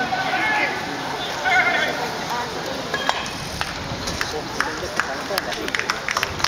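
Shouted voices of ballplayers calling out on the field during the first couple of seconds, then scattered short, sharp clicks and knocks.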